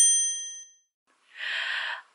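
A bright, bell-like ding sound effect: one sharp strike whose ringing fades out over most of a second. Near the end comes a short breathy hiss.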